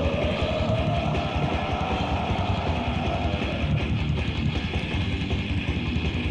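Early-1990s death metal demo recording: dense distorted electric guitars over rapid drumming. A long held note slides slowly upward and then fades out about three and a half seconds in.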